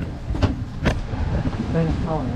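Two sharp knocks about half a second apart over a steady low rumble, with a voice coming in near the end.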